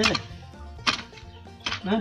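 Two sharp knocks about a second apart from a mattock striking hard, stony soil.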